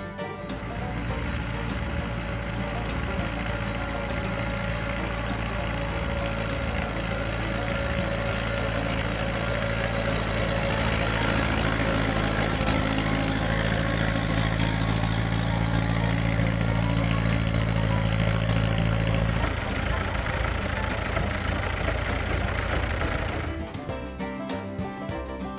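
An engine running steadily under background music; its lowest tones drop away about three-quarters of the way through.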